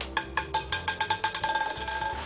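Roulette ball dropping off the track and bouncing across the wheel's frets and pockets: a run of sharp, ringing clicks that come faster and faster and run together into a rattle as the ball settles.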